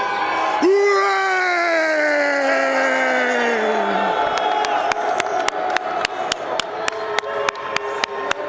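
A man's long, drawn-out announcer's shout, sliding slowly down in pitch over a cheering crowd, ends about four seconds in. Then music starts with a sharp, fast beat of about three to four hits a second over the crowd noise.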